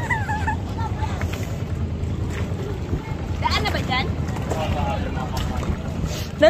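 Steady low drone of a boat engine running nearby, with light wind noise on the microphone.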